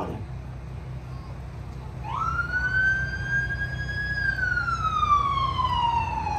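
A siren wailing: about two seconds in, one slow tone rises, holds level for a couple of seconds, then slowly falls in pitch as it runs on.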